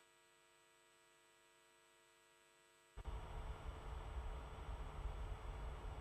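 A faint steady electrical hum in near silence. About three seconds in, a steady low rumbling noise cuts in abruptly and carries on much louder.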